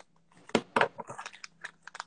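Packaging being opened by hand: a few sharp crinkling, crackling tears about half a second in and again just before a second, then faint scattered crackles.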